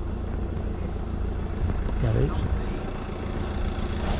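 Steady low rumble of street traffic, with a brief voice about two seconds in.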